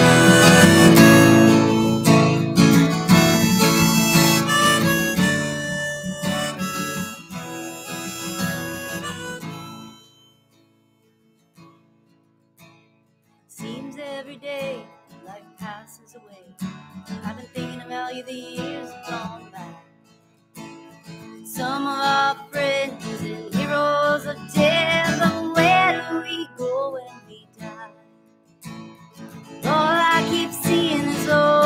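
Acoustic guitar strummed with a harmonica played in a neck holder, an instrumental song intro. Loud for the first ten seconds, it then fades and drops out almost entirely for a few seconds, and comes back quieter and uneven.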